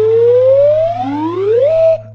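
Cartoon sound effect: a synthesized tone gliding slowly upward, joined about a second in by a second, lower tone that also rises and then holds; both cut off suddenly just before the end, over a steady low hum.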